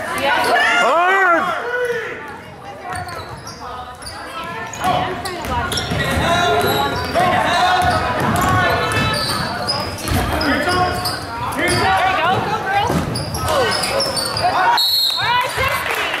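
Basketball being dribbled on a hardwood gym floor, with voices of players and spectators shouting and talking throughout, one loud shout about a second in.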